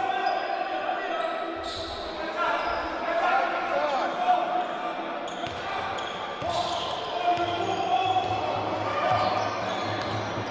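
Basketball bouncing on a hardwood court in a large, echoing sports hall, with players and spectators calling out over the game.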